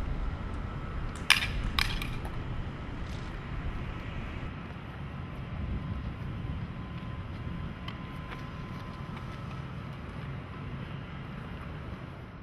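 A Samsung solid-state drive dropped from a three-story roof strikes the asphalt with a sharp clack about a second in and clacks again half a second later as it bounces, over a steady outdoor rumble.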